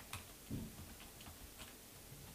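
A few faint computer keyboard keystrokes, irregularly spaced, as a formula is typed in.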